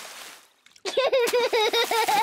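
A cartoon water splash fading away, then from about a second in a young child's quick, repeated giggling.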